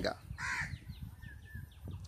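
A single short, loud bird call about half a second in, followed by a quick run of about six faint, high, falling chirps.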